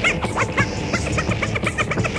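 Electronic dance music from a rave DJ set: a fast run of short, high chirping stabs over a steady beat.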